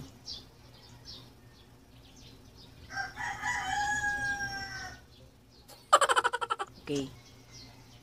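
A rooster crowing about three seconds in: one long call of about two seconds, falling slightly at the end. About six seconds in comes a louder, short, rapidly pulsing sound.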